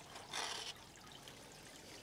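A felt-tip marker scratching briefly along a brick's edge on cardboard, a short scratch about half a second in, then near quiet.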